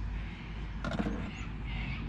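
A bird calling a couple of times near the end over a steady low outdoor hum, with a short clatter about a second in.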